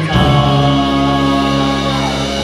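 Live rock band playing with several voices singing: a new chord begins just after the start and is held, sustained.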